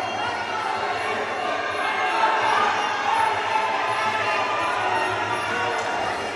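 Crowd at a ringside shouting and cheering, mixed with music playing over the hall's speakers.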